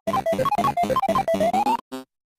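A short electronic jingle of rapid, choppy notes jumping between pitches, ending in a rising slide that cuts off abruptly near the end.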